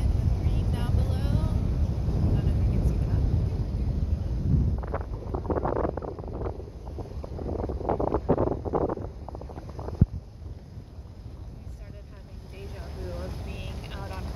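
Low rumble and wind buffeting on the microphone from a vehicle driving on a dirt road, with a few seconds of crackling noise in the middle and one sharp click about ten seconds in.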